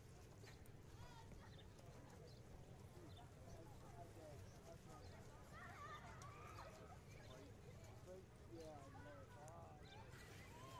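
Faint, indistinct voices of people talking in the distance, more noticeable in the second half, over a low steady rumble.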